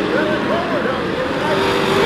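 A pack of Sportsman stock cars racing close together, several engines running hard at once, their pitch repeatedly swinging up and down as they work through the turn.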